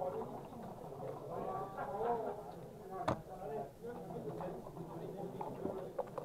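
Background chatter of several voices in a room, with one sharp click about three seconds in.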